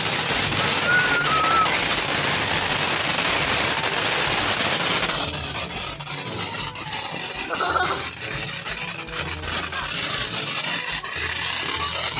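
Ground fountain firework spraying sparks with a loud, steady hiss. About five seconds in the hiss thins and turns into a sparser crackling spray.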